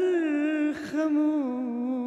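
A man singing unaccompanied into a microphone. He holds a long note, breaks briefly about a second in, then carries on with a wavering, ornamented melody.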